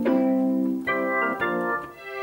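Ensoniq ESQ-1 wavetable synthesizer played from its keyboard: sustained chords, with new notes struck about a second in and again half a second later.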